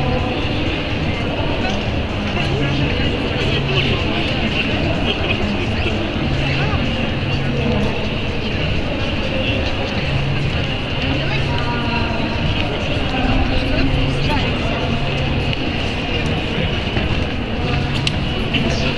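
Steady crowd babble of many people talking at once, under a continuous low rumble.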